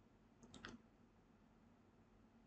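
A short, faint cluster of computer clicks about half a second in as the notebook cell is run, otherwise near silence.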